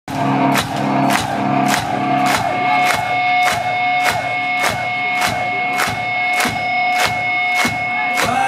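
Hard rock band playing live in a concert hall: a drum struck in a steady beat a little under twice a second, under a long held note, with a low pulsing bass line in the first few seconds.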